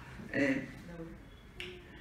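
A man's brief hesitant utterance into a microphone, a short 'uh'-like syllable, followed by a short sharp click.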